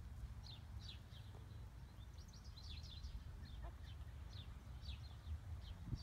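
Small songbirds chirping over and over, short quick notes that sweep downward, over a steady low outdoor rumble, with a brief thump near the end.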